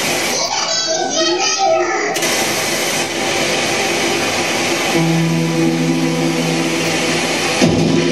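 Live band performance in a small club: a vocalist shouting into the microphone over the band for about two seconds, then a dense wash of amplified sound. From about five seconds a steady low note is held, and near the end the full band comes in with electric guitar.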